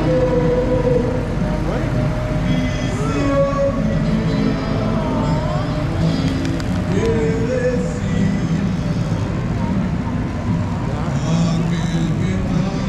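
Guitar band playing live on a passing flatbed parade float, mixed with crowd voices and the truck's engine.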